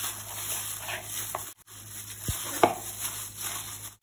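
A hand in a thin plastic glove mixes raw chicken pieces in a wet marinade in a plastic bowl, making squishing and glove crinkling. There is a brief break about one and a half seconds in.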